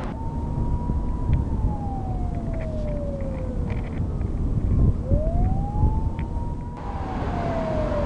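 A siren wailing slowly, one tone that rises, holds, then slides down over a few seconds, and rises again about five seconds in. Under it is a steady low rumble.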